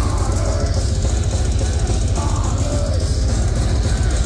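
A heavy metal band playing live at a steady, loud level: drum kit and electric guitar over a heavy bass.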